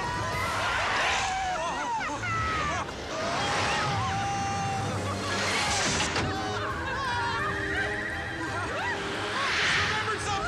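Music score under people yelling and screaming as they ride a speeding toy car, with whooshes swelling up several times as it races along the track.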